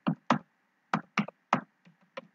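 Computer keyboard keys being typed: about seven short, irregularly spaced key clicks as a word is entered.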